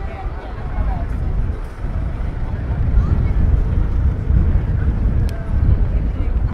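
City street ambience dominated by a loud, uneven low rumble that builds about half a second in, with passers-by talking faintly.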